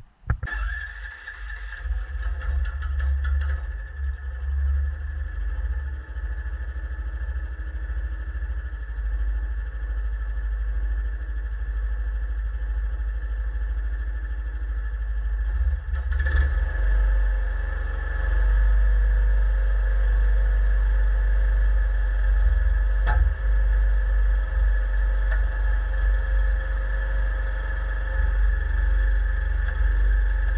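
Sawmill machinery running steadily. About halfway through, the sound switches to the small Predator gas engine of a homemade hydraulic log splitter running, with one sharp knock later on.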